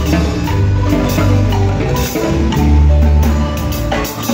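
Guatemalan marimba played live by several players at once, rubber mallets striking the wooden bars in a son, with deep bass notes underneath.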